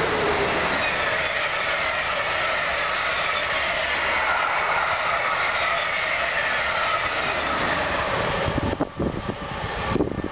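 Passenger train passing at speed: a steady rush of wheels on rail with whines that slowly fall in pitch, dropping away suddenly about nine seconds in as the last coach goes by.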